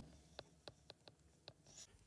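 Near silence with four faint, sharp ticks spread unevenly over two seconds: a stylus tapping as a small label is handwritten.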